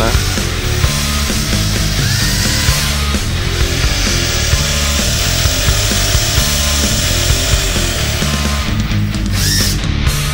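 Cordless drill run at low speed on a light trigger, its twist bit starting a hole in a wooden board, under loud rock music.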